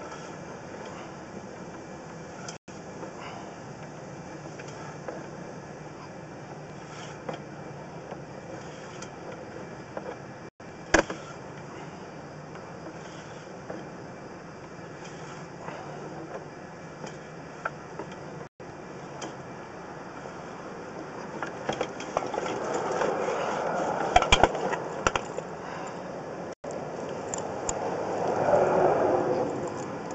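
Sewer inspection camera's push rod being pulled back through the pipe and reeled in, a steady scraping noise with scattered clicks. It gets louder and more irregular over the last several seconds as the camera head comes out of the line.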